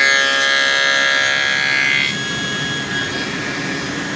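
SawStop table saw with a dado stack cutting a half-inch finger-joint slot through a board held in a jig, a loud high-pitched whine that lasts about two seconds. The saw then keeps running free at a lower level once the cut is through.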